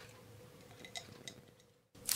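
Faint room tone with a few light clinks, three or so close together about a second in; the sound then cuts out abruptly just before the end.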